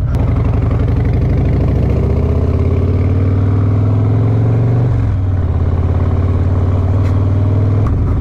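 Harley-Davidson Road Glide's V-twin engine pulling away and accelerating, its pitch climbing steadily. About five seconds in there is a brief break as it shifts up a gear, then the pitch climbs again.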